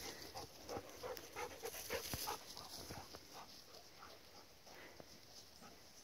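A dog panting faintly in quick, short, uneven breaths that thin out after about three seconds.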